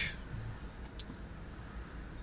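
Low steady hum of a 2016 Jeep Grand Cherokee's six-cylinder engine idling, heard from inside the cabin, with one short click about a second in.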